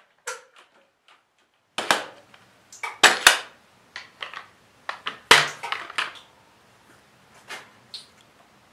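Quick-Grip bar clamps being released and taken off a Kydex forming press: a string of sharp clicks and knocks with gaps between them, the loudest about three seconds and five seconds in.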